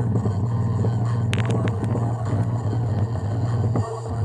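Small Bluetooth speaker at maximum volume playing a bass-heavy song: a deep, sustained bass note dominates, with a few sharp clicks about a second and a half in, and the bass drops off just before the end.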